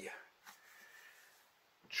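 Quiet room tone between spoken words: the end of a word at the start, a faint click about half a second in, then a faint hiss.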